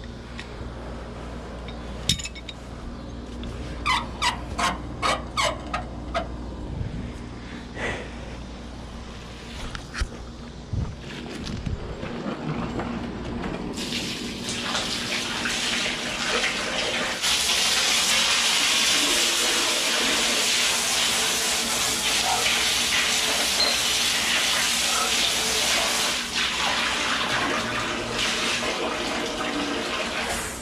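Garden hose water spraying inside a stainless-steel tank, washing residue off its walls. It starts about halfway through and grows louder a few seconds later as a steady rush. Before it comes a quick run of sharp clicks.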